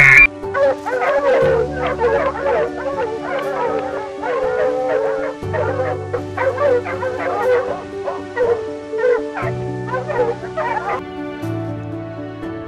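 Red foxes calling in a rapid run of short, high yapping cries, over background music; the calls stop about a second before the end.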